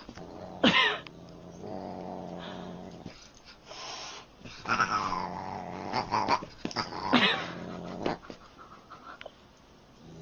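Siamese cat and large dog play-fighting: a few short yowls and growls, the loudest about a second in and again around five and seven seconds in.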